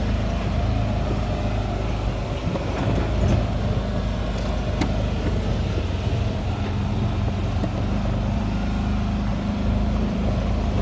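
Off-road vehicle's engine running steadily at low speed on a rough dirt track, heard from inside the vehicle, with small rattles and a sharp click about five seconds in.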